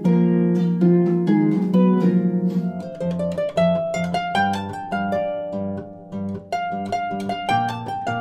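Harp played solo: a driving rock riff of repeated low plucked notes, then about three seconds in it switches to a pop piece with a higher plucked melody over bass notes.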